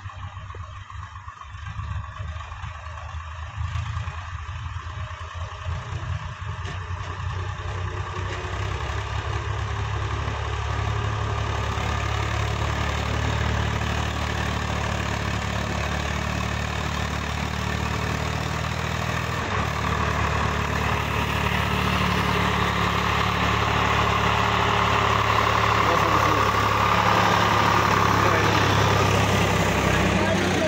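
Diesel farm tractor engine running steadily as it pulls a trolley loaded with soil, growing louder as it draws close and comes alongside.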